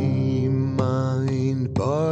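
A song with acoustic guitar strumming under a long held sung note.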